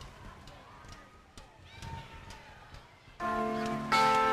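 Low room noise of a live concert recording with a few faint clicks. About three seconds in, the band comes in with sustained, steady chords opening a song.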